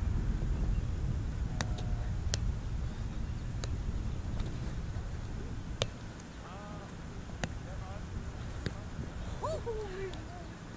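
Sharp strikes of a roundnet (Spikeball) ball during a rally, the small ball slapped by hands and bouncing off the net, about six separate hits with the loudest about six seconds in. A steady low rumble of wind on the microphone runs underneath.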